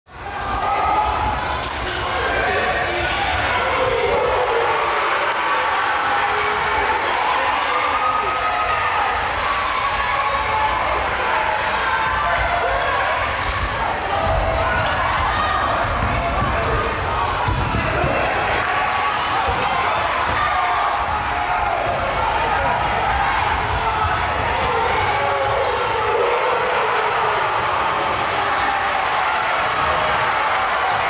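Basketball being dribbled on a gym's hardwood floor, with repeated bounces over a steady din of crowd voices echoing in a large hall.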